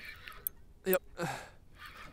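A man's voice briefly saying "yep", with a short breathy sound after it, over a soft hiss; a single sharp click comes about half a second in.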